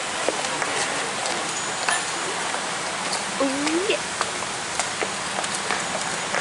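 A steady, even hiss of outdoor noise, with scattered small clicks and a short rising voice sound about three and a half seconds in.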